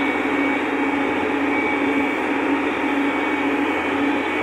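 Tractor diesel engine running steadily under way, heard from inside the cab: an unbroken drone with one constant hum in it.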